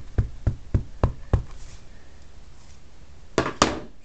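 Ink pad tapped repeatedly onto the rubber face of a large wood-mounted stamp to ink it: about six quick knocks, roughly four a second, then two sharper knocks close together near the end.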